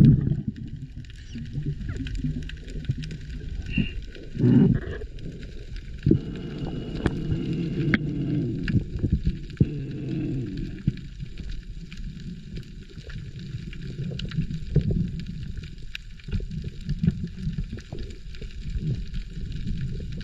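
Underwater sound through a camera housing while swimming over a coral reef: a low, muffled rumble of moving water with scattered sharp clicks and crackles, and a louder low surge about four and a half seconds in.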